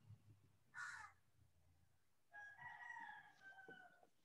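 Near silence, with a faint short rustle about a second in and then a faint, drawn-out animal call that falls slightly in pitch, heard from a distance.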